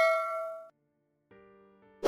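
Bell-like chime from a subscribe-button animation sound effect, ringing out and fading away within the first second. A faint, soft chord of tones follows from about a second and a half in.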